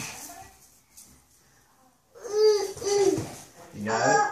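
A toddler's wordless high-pitched vocalizing: after a quiet stretch, two drawn-out sing-song sounds a little over two seconds in, and another voice sound starting just before the end.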